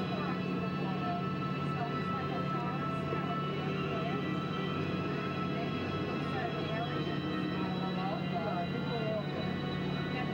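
Submarine ride's onboard soundtrack between narration lines: a steady low hum under sustained eerie tones, with short wavering gliding tones scattered throughout.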